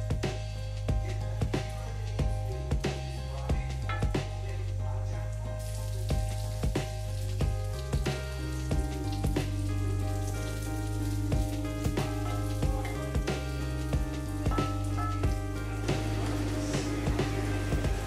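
Sliced chorizo sizzling in a frying pan as it is stirred with a wooden spatula, under background music with a steady beat and bass.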